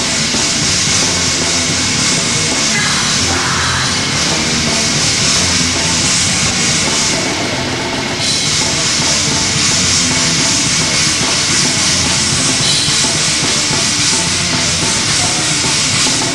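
Heavy metal band playing live and loud: electric guitars, bass guitar and drum kit, with cymbals ringing steadily throughout.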